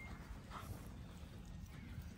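A spaniel panting faintly as it moves about on grass, over a low rumble of wind on the microphone.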